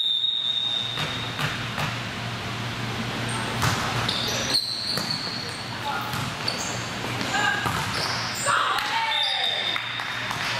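Volleyball rally in a gym: a referee's whistle sounds for about a second at the start, and ball hits and sneaker squeaks follow through the rally under players calling out. Another whistle comes near the end.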